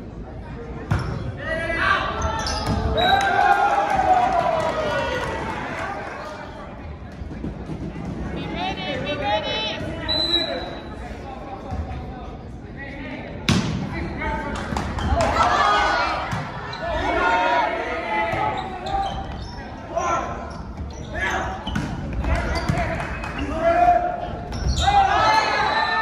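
Volleyball being bounced and struck on a hardwood gym floor, with sharp ball hits (the loudest about 13 seconds in) among players' calls and shouts echoing in the gym. A brief whistle sounds about ten seconds in.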